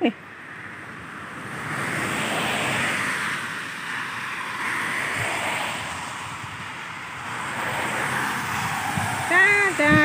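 Cars driving past on a wet road: the hiss of tyres on wet asphalt swells and fades several times.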